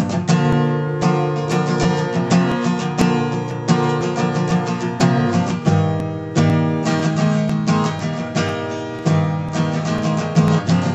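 Acoustic guitar strummed in a steady rhythm, the chords ringing on between strokes.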